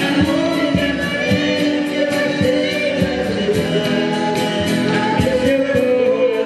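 Live Brazilian roots song: a woman singing lead over accordion and strummed acoustic guitars, with a steady beat about two strokes a second.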